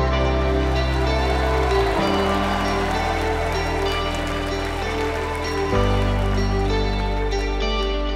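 A live worship band plays an instrumental passage without singing: sustained chords over long held bass notes that change twice, with a steady shimmering wash in the high end.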